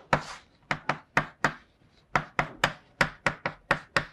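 Chalk on a blackboard while an equation is written: a quick, irregular series of about a dozen sharp taps, with a short scrape near the start.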